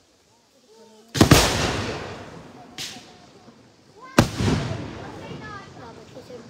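Daytime fireworks: two loud aerial shell bursts about three seconds apart, each a sudden bang that echoes as it fades, with a smaller sharp crack between them.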